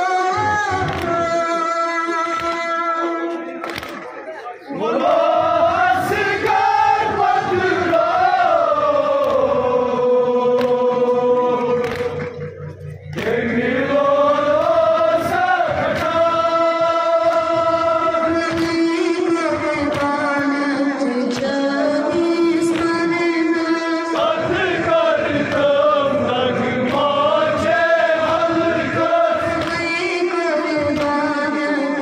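A Kashmiri nowha, a Muharram lament, sung by a solo voice in long, drawn-out, wavering phrases, with short breaks for breath about four and twelve seconds in.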